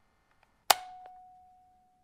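A single sharp metallic clang about two-thirds of a second in, ringing on in one steady tone that dies away over about a second. It is an intro sound effect, with two soft ticks just before it.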